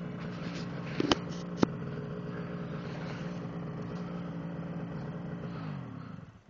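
Snowmobile engine running steadily at a low, even speed, its pitch sagging and dying away near the end. Two sharp clicks sound about a second in, half a second apart.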